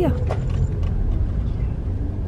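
Steady low rumble of a car's engine and tyres, heard from inside the cabin as the car moves slowly.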